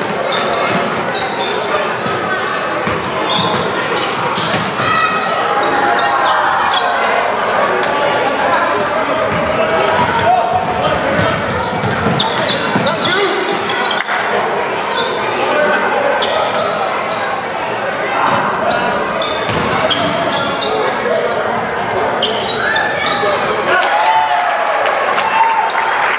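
Live basketball game in a large gym: a basketball dribbled on the hardwood floor, with players and spectators shouting and talking all through.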